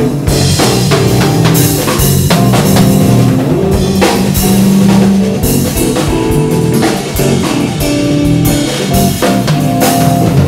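Loud band music: a drum kit with bass drum and guitar playing steadily.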